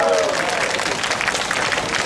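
Audience applauding, with a drawn-out cheer from the crowd trailing off at the start.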